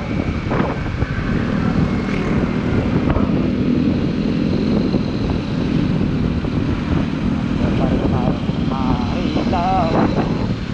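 Kymco Like 125 scooter underway, its single-cylinder engine humming steadily under wind rushing over the microphone and road noise. Near the end a warbling tone wavers up and down several times.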